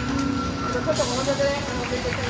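Outdoor street ambience: people's voices nearby over a steady background hum of traffic, with a brief hiss about a second in.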